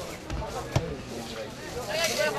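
Voices of players calling across an outdoor football pitch, with a single sharp knock a little under a second in.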